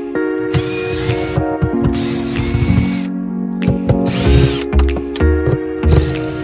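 Cordless Ryobi drill/driver running in several short bursts, spinning up and down as it backs out the screws of an old gas-bottle holder bracket. Background music plays throughout.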